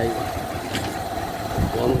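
Low, uneven outdoor rumble with a faint steady hum behind it, a short click a little under a second in and a low thud near the end, in a pause between spoken words.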